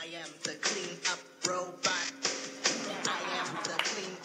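A kindergarten clean-up song played from the sound board of a home-made robot costume, with pitched melody in a steady beat.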